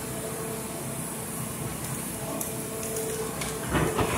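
Excavator engine running steadily with a faint steady whine, over the rush of water pouring through a freshly breached beaver dam.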